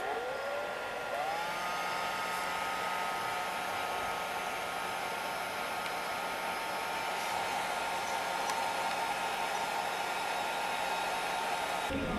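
Hair dryer switched on: its motor whine rises as it spins up, climbs again to a higher speed about a second in, then runs steadily with a rush of blown air.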